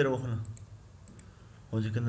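A man's voice trails off. In the short pause before he speaks again there are a couple of faint computer mouse clicks.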